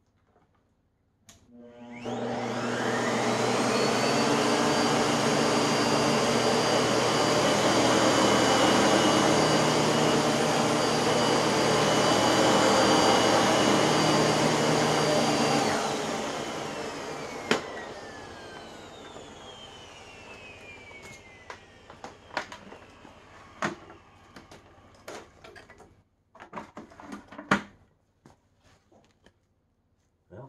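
Miele Jazz upright vacuum cleaner switched on about two seconds in, its motor whine climbing to full speed and running steadily for about fourteen seconds as it works the sand test patch in the carpet. It is then switched off and winds down with a falling whine. Scattered clicks and rustles follow as the dust bag is taken out.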